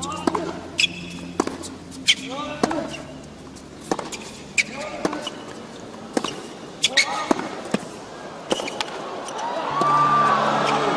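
Tennis rally on a hard court: sharp racket strikes on the ball come roughly every second, with short squeaks of players' shoes on the court surface between shots.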